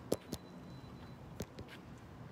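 A few sharp taps and knocks from the recording device being handled: two close together just after the start, two more about a second and a half in.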